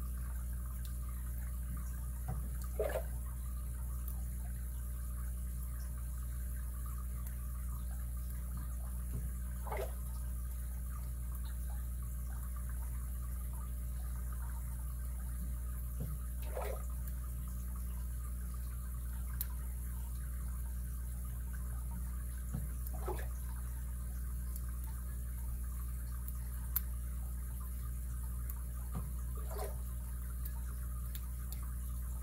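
Lock picking: a few faint clicks of the pick and tension wrench working the pins of a lock, over a steady hum and hiss. A short soft sound recurs about every seven seconds.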